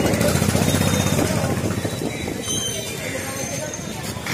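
A crowd of people talking over one another in a busy street market, with street noise behind them, louder in the first two seconds.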